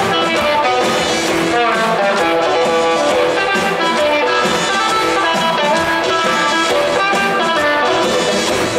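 Live rock band playing an instrumental passage without vocals, electric guitars to the fore over drums and bass.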